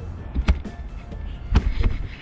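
Sharp clicks and knocks from a Yolotek Powerstick telescoping camera pole being handled as its section locks are clamped. There is one knock about half a second in and a quick cluster near the end.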